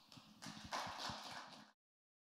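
Light applause from a small audience, a patter of separate claps that starts about half a second in and cuts off suddenly near the end.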